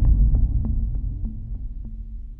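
Logo-reveal sound effect from an advert: a deep bass boom that slowly fades out, with faint light ticks about three times a second over it.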